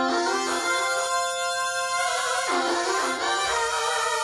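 Minimoog-model virtual analog synthesizer, written in Faust and running on an Analog Devices SHARC Audio Module, played from a MIDI keyboard: a few held notes, the pitch sliding from one note to the next.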